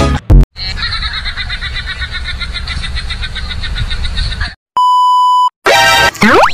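Edited-in comedy sound effects: a brief thud, then about four seconds of a high, rapidly trembling effect, then a steady one-tone censor-style beep lasting just under a second, followed by a quick rising effect at the end.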